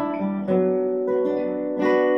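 Acoustic guitar playing a slow lead melody: single picked notes, each left to ring under the next, with new notes starting about half a second in, a little past a second, and near the end. This is the opening phrase of the lead, played directly from this position.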